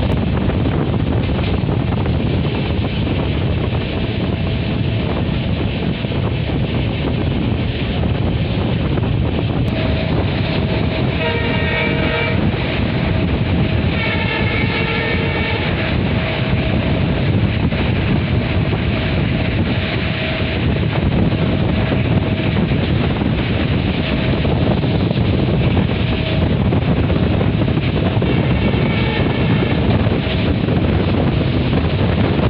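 Passenger coaches of a diesel-hauled train running at speed, with a continuous rumble of wheels on rails and wind rushing past the open window. The WDP4D locomotive's horn sounds in two blasts about halfway through and once more near the end.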